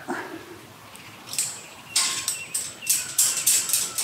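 A small bird chirping in a rapid series of short, high-pitched notes, starting about a second in and running on until near the end.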